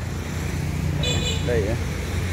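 Steady low hum of motor traffic and engines, with a short high-pitched beep about a second in.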